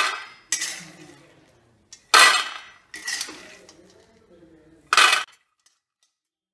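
Raw peanuts poured in handfuls into a stainless steel plate, rattling on the metal in five separate bursts that each die away. The last burst cuts off suddenly.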